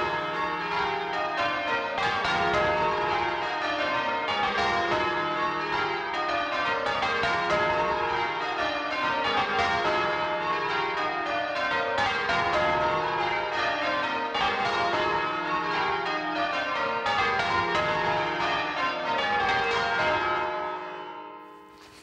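Change ringing on a cathedral's ring of twelve church bells, rung full circle by a band pulling the ropes. Each round of strikes steps down in pitch from the lightest bell to the heaviest, one round after another, and the sound fades away near the end.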